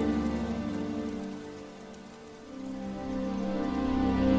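Slow background music of sustained chords that fades down about midway and swells back toward the end, over a soft, even hiss like rain.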